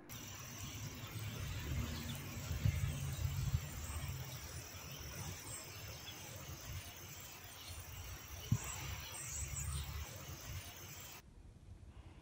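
Outdoor ambience picked up by a phone microphone: wind buffets the mic in uneven low gusts over a steady hiss, with faint high chirping. A single sharp knock comes about eight and a half seconds in, and the sound cuts off abruptly near the end.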